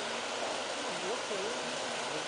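Voices of a gathering of people, a pitched voice wavering up and down, over a steady noisy hiss.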